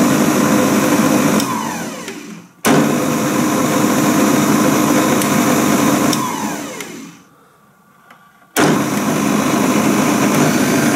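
Moulinex Masterchef 750 food processor motor running with an empty bowl, a steady hum. About one and a half seconds in it is switched off and spins down with falling pitch, then starts again abruptly; at about six seconds it is switched off again, coasts to a stop and stays quiet for over a second before starting again near the end.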